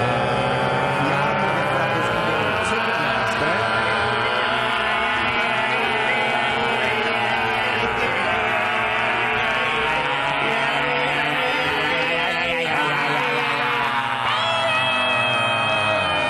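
Music playing: a song, steady in loudness, with shifting pitched lines throughout and held notes near the end.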